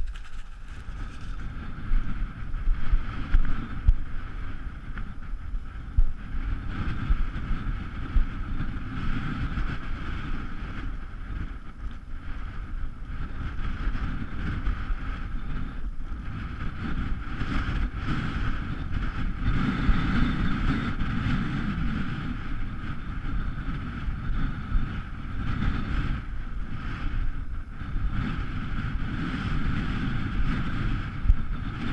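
Strong wind buffeting the microphone: a continuous low rumble that swells and dips with the gusts, loudest in a few gusts in the first several seconds, over a steady hiss.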